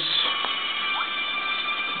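A steady high-pitched electronic whine of several tones, with two faint ticks within the first second.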